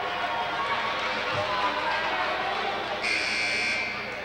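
A basketball scoreboard buzzer sounds once, for just under a second, near the end, over the murmur of crowd voices.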